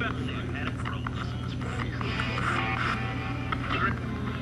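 Ghost box sweeping through radio stations: choppy, broken fragments of voices and static over a steady low hum. A fragment about three seconds in is heard as the name "Zory".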